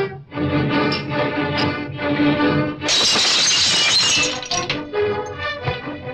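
Film-score music with sustained pitched instruments, broken about three seconds in by a loud, bright crash, like glass shattering, that lasts about a second before the music goes on.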